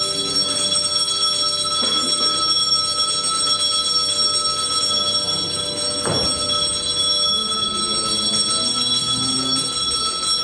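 Puja bell ringing continuously, its ringing tones held steady without a break.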